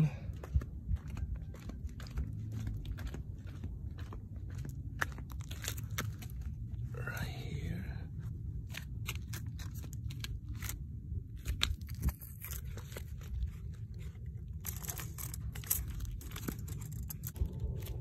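Cloth rustling and a string of small clicks and rattles from handling a towel-covered wire cage trap, over a low rumble.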